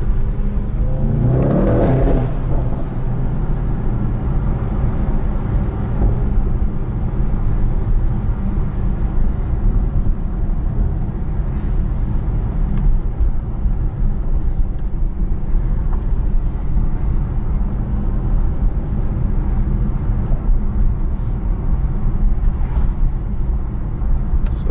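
Cabin sound of a Mercedes-AMG E63 S's twin-turbo V8 and its tyres while driving through city streets: a steady low rumble, with the engine note rising briefly about two seconds in as the car pulls away.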